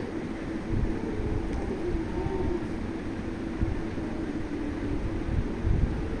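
Spiced tomato masala frying in an aluminium kadai over a gas burner: a steady rumbling hiss, with a few low knocks of a metal spatula stirring it.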